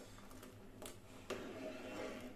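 Steel ladle stirring milk with barnyard millet in a steel pot, giving a couple of faint scrapes and clicks against the metal over a low steady hum.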